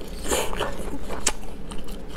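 Close-miked mouth sounds of a person biting and chewing braised lamb intestine roll: a bite about half a second in, then a sharp click and a few smaller ones.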